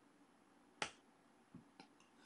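Near silence broken by one short, sharp click about a second in, followed by two much fainter ticks.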